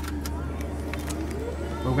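Converted Ford F-150's electric drive motor idling, a steady low hum heard from inside the cab, with a faint whine that rises in pitch near the end.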